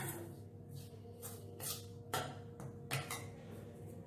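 A hand rubbing and mixing powdered roasted gram with ghee in a stainless steel bowl: about five short, soft swishing strokes over a faint steady hum.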